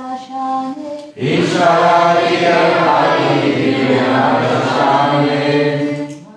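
A lone male voice ends a chanted line of a Bengali scripture verse. About a second in, a group of many voices sings the line back in unison, loud and full, in call-and-response. The group stops near the end.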